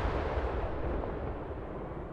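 Aerial firework shell bursts dying away: a rolling rumble and echo after a big volley, fading steadily.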